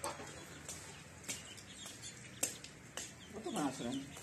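A chicken clucking in a short run of calls near the end, with a few sharp clicks earlier on.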